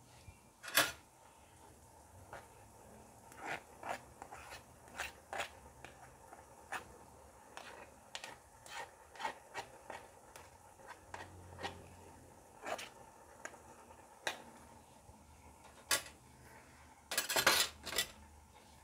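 Metal spoon and perforated skimmer scraping and tapping in a coated cooking pot as partly cooked rice is heaped into a mound in the centre to steam, with scattered light clicks and a louder burst of clatter near the end.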